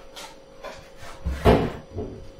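Footsteps on a hard kitchen floor, about two a second, then a louder knock about one and a half seconds in as something is set down or shut at the kitchen counter.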